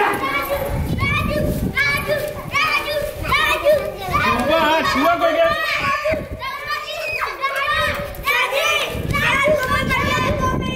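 Children's high-pitched voices in a kabaddi game: a repeated chanted call, about twice a second, over the shouting of the other players.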